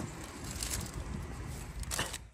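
Steady outdoor background noise with a low rumble and no distinct single event.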